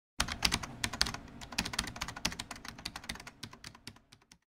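Computer keyboard typing, a rapid run of sharp key clicks that starts abruptly and stops just before the end. This is the typing sound effect laid under a question being typed out on screen.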